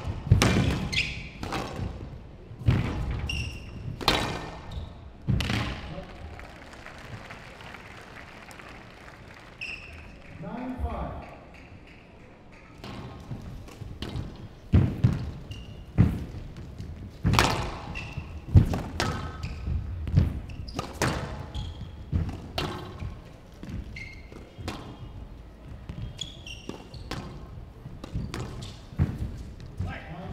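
A squash ball being struck hard by rackets and smacking the walls of a glass court, in quick irregular strokes through the rallies. Short squeaks of court shoes on the wooden floor come in between the hits.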